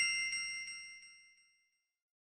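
Logo sound effect: a bright, bell-like chime ding whose several tones ring together and fade away over about a second and a half, with a few soft ticks as it dies.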